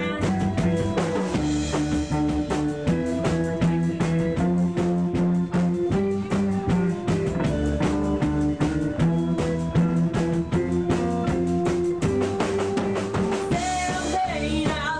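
Live rock band playing an instrumental break: a drum kit keeps a busy beat under held, sustained chords and bass notes that change every second or two, with no singing.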